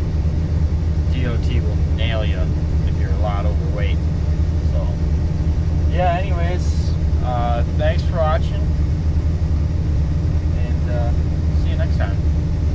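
Steady low drone of a New Holland TR88 combine running, heard from inside its cab.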